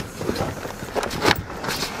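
Hard-shell suitcases being shoved into a packed SUV's cargo area: a few short knocks and scrapes of luggage against luggage in the second half.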